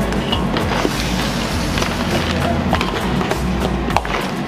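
Mud crab pieces clattering and knocking in a pan as they are tipped into the spice base and tossed, over background music with a steady bass line.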